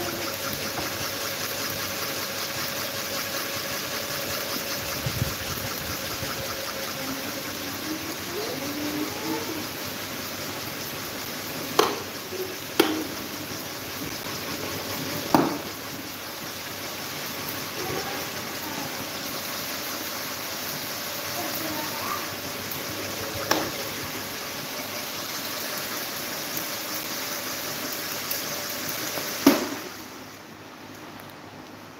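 Several electric table and pedestal fans running together: a steady rush of air with a faint motor hum, broken by a few sharp clicks.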